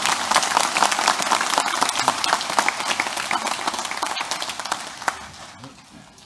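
Congregation applauding, a dense patter of many hands clapping that dies away over the last second or so.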